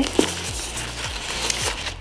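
White paper wrapping around a handbag rustling and crinkling as it is handled, over soft background music.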